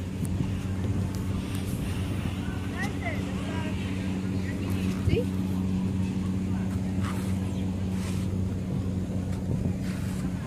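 An engine running steadily at idle, a low even hum that holds the same pitch throughout, with faint voices in the background.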